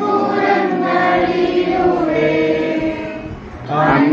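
A group of voices singing a Christian hymn together in held, drawn-out notes, with a short break between lines just before the end before the singing picks up again.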